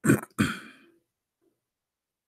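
A man clearing his throat twice in quick succession: two short, loud bursts within the first second, the second trailing off.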